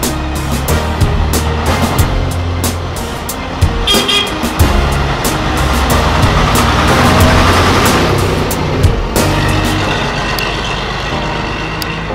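Vintage Routemaster double-decker bus driving past, its diesel engine and tyre noise growing to a peak about seven seconds in and then fading. Background music with a steady beat plays throughout.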